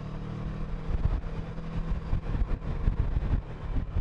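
Kawasaki Versys 650's parallel-twin engine running at a steady cruise, with wind rumbling on a helmet-mounted microphone.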